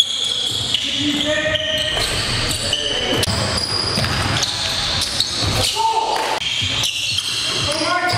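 Live basketball game in an echoing gym: a basketball being dribbled on the hardwood floor, short high-pitched sneaker squeaks, and players' indistinct voices.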